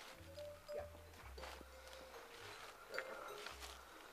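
Quiet background music with a low bass line, with a few soft footsteps of someone walking full weight across a strawberry bed mulched with wood chips.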